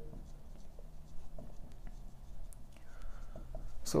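Marker pen writing on a whiteboard: faint scratchy strokes with a brief squeak about three seconds in.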